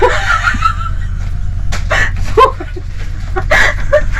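A woman laughing in high-pitched, squealing bursts: one long wavering squeal at the start, then several short bursts. Underneath is a steady low hum.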